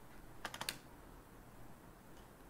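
A quick run of four light clicks, about half a second in, over faint room hiss.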